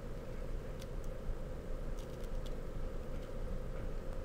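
Steady low room hum with a faint steady tone, over which scissors make a few faint clicks while cutting a strip of black tape lengthwise in half.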